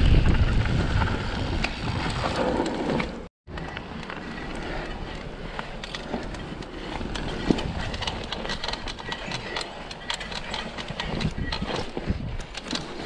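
Mountain bike riding fast down a dirt singletrack: wind buffeting the camera microphone over a low rumble, broken by a brief total silence about three seconds in. After that come quieter tyre noise on dirt and many small clicks and rattles from the bike over the rough trail.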